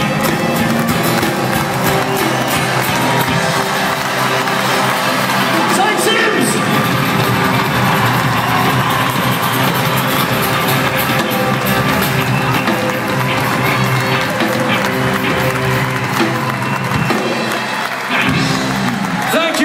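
Live band music with acoustic guitar and fiddles, and a choir of children's voices singing along, with a crowd cheering.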